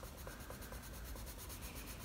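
Faber-Castell Polychromos coloured pencil scratching faintly on sketchbook paper in short, repeated shading strokes.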